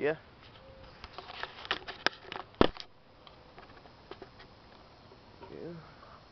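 Handling clicks and knocks as a handheld camera is moved and set down, the loudest knock about two and a half seconds in; a brief vocal sound near the end.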